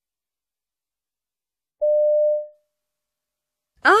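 A single electronic beep about two seconds in: one steady mid-pitched tone lasting about half a second and fading away. It is the signal tone that marks the start of each recorded piece in a listening test.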